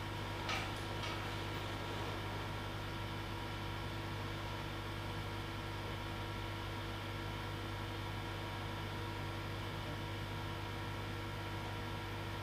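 Steady electrical mains hum over quiet room noise, with a couple of brief faint clicks about half a second and a second in.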